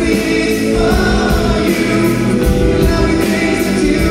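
Live pop band playing with singing over a steady beat, recorded loud from within the concert audience.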